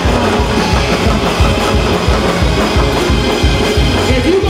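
Live gospel praise-break music: a drum kit keeps a fast, steady beat under the full band.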